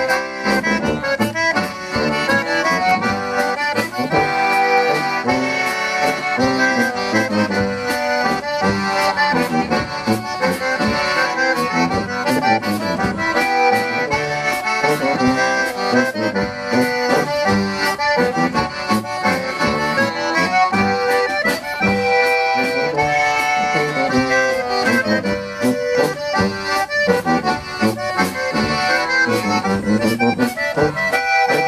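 Live polka-band waltz: concertina carrying the melody over tuba bass and a drum kit, played steadily throughout.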